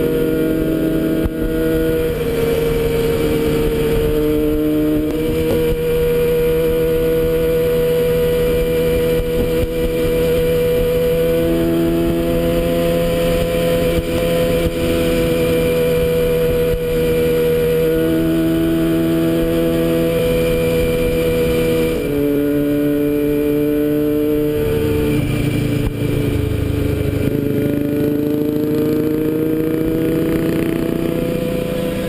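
Motorcycle engine running steadily at cruising speed, heard from on the bike itself. Its pitch drops slightly about two-thirds of the way through, then climbs steadily near the end as the bike speeds up.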